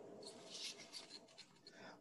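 Near silence: faint soft rustling with a few small ticks in the first half, close to the microphone.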